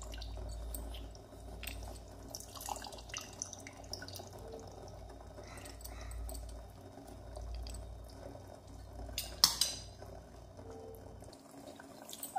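Lemon juice dripping from a metal hand-press lemon squeezer into a pot of simmering chutney, with scattered small metal clicks. One sharper clack comes about nine and a half seconds in, over a low steady hum.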